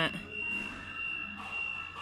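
A steady high-pitched tone runs unbroken under faint background voices, with the tail of a spoken word at the start.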